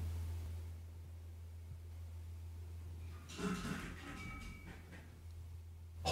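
A faint, muffled noise about three seconds in, lasting about a second, which the listeners take for something rolling down the stairs. A steady low hum runs under it.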